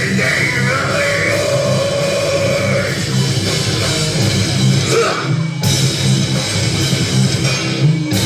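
Live heavy metal band playing: distorted electric guitar over a drum kit, with a voice holding a long note through the first few seconds. The band drops out briefly just past halfway, then comes back in.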